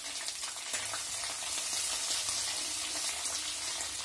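Oil sizzling steadily as sliced aromatics and green chillies fry in a clay pot, with a spoon stirring through them and light crackling.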